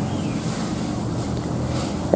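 A steady, even rushing noise with no distinct events, spread evenly from low to high pitch.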